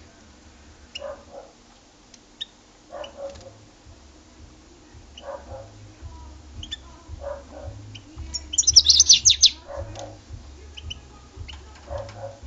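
European goldfinch chirping, with one loud burst of rapid twittering about halfway through and a few faint single chirps. Under it, a lower short call repeats about every two seconds.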